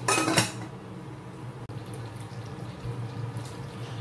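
Aluminium saucepan lid set down on the pot with a brief metallic clatter and ring at the start. A steady low hum follows.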